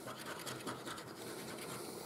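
A coin scraping the scratch-off coating on a paper lottery ticket: a faint, fast run of scraping strokes.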